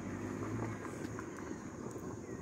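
Quiet outdoor background: a faint low hum that fades within the first second, under a steady high-pitched whine.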